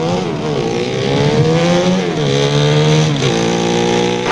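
Motorcycle engine revving from a TV show's soundtrack, its pitch rising and dropping several times, with clear drops about two seconds and about three seconds in.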